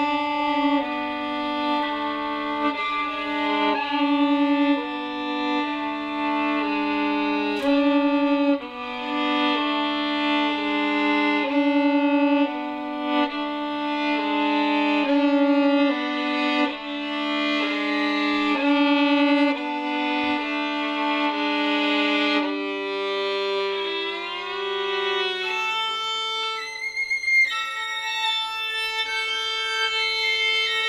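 Solo violin playing slow double stops: a moving upper line over a repeated held lower note, the notes changing about once a second. A little past two-thirds of the way through, the held note drops out and the pitches slide downward, then settle into higher sustained notes.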